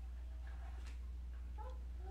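Two faint, short, high-pitched calls of a small animal, the second bending upward near the end, over a steady low electrical hum.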